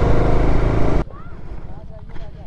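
Motorcycle riding noise: wind rushing over the microphone with the engine running underneath. It cuts off abruptly about a second in, leaving a much quieter outdoor background.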